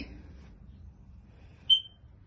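A single short, high-pitched electronic beep near the end, over faint low rumble.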